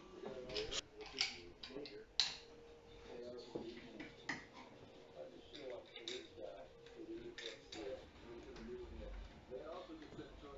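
Plastic Lego bricks clicking and rattling as they are picked out of a stainless steel bowl and pressed together: an irregular series of sharp clicks, the loudest about two seconds in.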